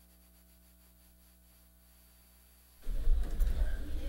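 Chamber audio feed dropped out: near silence with only a faint steady electrical hum. About three seconds in, the feed cuts back in abruptly with loud, low rumbling noise from the open microphone channel. This is the sound cutting out that the speaker had just remarked on.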